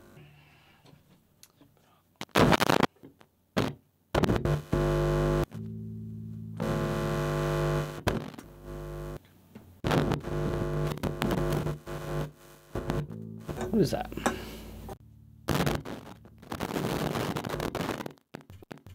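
Electric bass guitar played through the studio: clicks and thumps as the lead is handled, then several held low notes, followed near the end by a rough, crackly noise. Something in the signal chain is faulty, which the player suspects is the lead rather than the bass.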